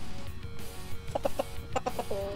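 A young Delaware rooster clucking, a quick run of short calls in the second half, over background music holding a steady note.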